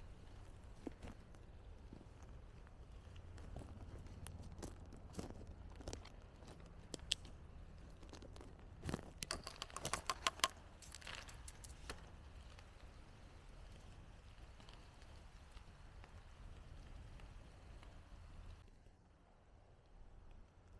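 Faint scattered crackles and clicks of a plastic zip bag and sticks being handled on pine-needle litter, with a denser cluster of crinkling a little past the middle, over a faint low rumble.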